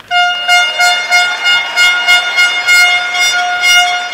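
A held synthesized note, bright with overtones, starting suddenly and pulsing about three times a second: the sound of a closing logo ident.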